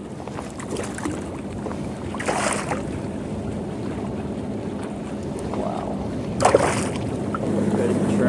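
Hooked speckled trout splashing at the surface beside the boat twice, about two seconds in and again near the end, over wind and water lapping at the hull. A low steady hum comes in near the end.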